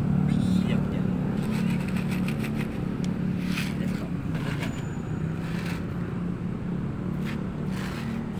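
Steady low motor hum that slowly fades, with a few brief sharp sounds in the second half.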